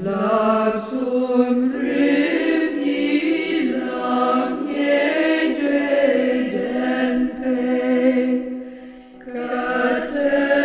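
Buddhist mantra chanted melodically as music, with long held sung notes. It dips briefly just before nine seconds in, then resumes.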